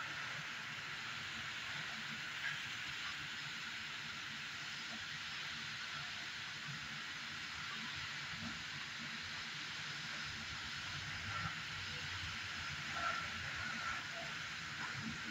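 Heavy rain and wind of a thunderstorm, a steady hiss with a couple of brief ticks.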